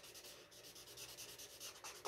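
Felt-tip marker scrubbing on paper in rapid, faint, short strokes, filling in a solid black area of a drawing.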